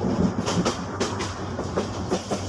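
Dubbed-in train sound effect: a train running on rails, wheels clacking at irregular intervals over a steady low rumble.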